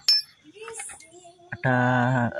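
A single sharp metallic clink with a brief ring as the Vespa engine's gear parts are handled, followed by faint light knocks.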